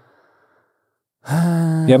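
A man's faint breath, then a drawn-out, breathy voiced sigh held on one pitch for about half a second, running straight into speech.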